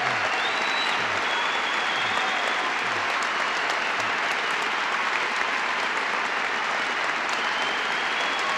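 Audience applauding steadily and continuously.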